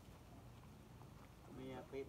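Faint background, then near the end a short pitched vocal sound lasting about half a second.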